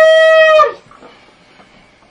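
A ram's-horn shofar blast held on one steady, bright note that dips in pitch and cuts off less than a second in, followed by quiet room.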